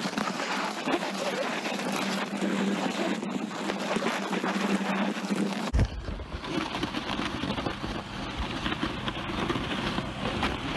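Plastic sled sliding over snow as a rope tow pulls it uphill, a steady scraping hiss with rope and handling noise on the phone. About six seconds in, a low rumble suddenly joins in.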